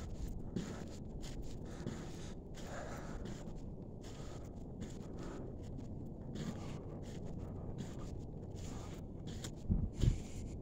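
Steady low outdoor background noise, heard through a phone's microphone while walking along a path, with a brief thump just before the end.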